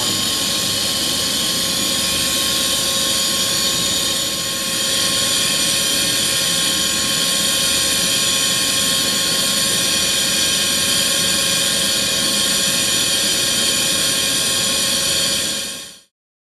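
Air-fed spray gun with glass-fibre chopper running steadily: a loud hiss with a steady whine over it, dipping briefly about four seconds in and cutting off suddenly at the end.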